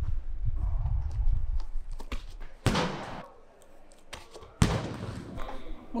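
Two sharp thuds about two seconds apart from a 4 kg throwing ball in overhead power throws, each ringing on in the echo of a large indoor hall.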